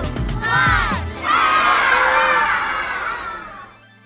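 A shouted voice over upbeat music as an animated countdown reaches its last number, then a crowd of children cheering and shouting from just past a second in, fading out toward the end as the music stops.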